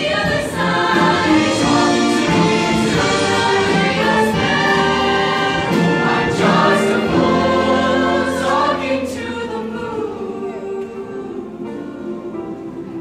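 A mixed-voice high school show choir singing full-voiced with instrumental accompaniment. The sound drops off about nine seconds in, leaving quieter music.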